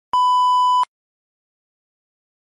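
A single steady electronic beep, one pure tone lasting just under a second, with a sharp start and a sudden cut-off.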